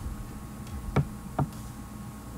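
Two short, sharp knocks about half a second apart, over a faint steady hum.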